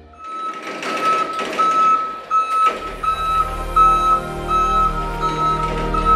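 Forklift warning beeper sounding a repeated high beep, about three beeps every two seconds, over background music.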